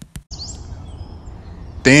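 Outdoor ambience bed: a steady low background hiss with faint high bird chirps, after a quick run of rapid, evenly spaced clicks that stops just after the start. A man's voice begins near the end.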